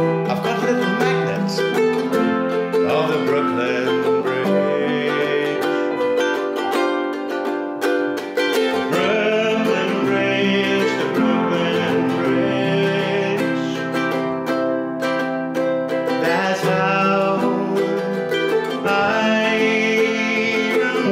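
Ukulele strumming with upright piano accompaniment playing a song, with a man singing over it at times.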